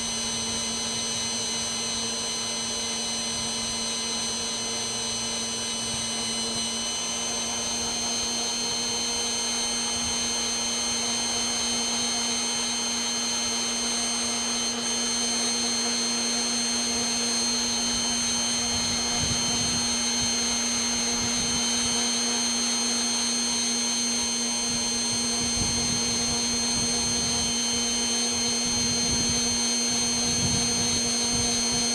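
Blower motor of a homemade column roaster running steadily with a constant hum and whine, its high tones stepping slightly about seven seconds in. Low rumbles come and go in the second half.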